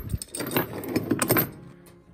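Heavy iron chain of a set of antique leg irons clinking and rattling as it is handled, a quick run of metallic jingles that dies away near the end.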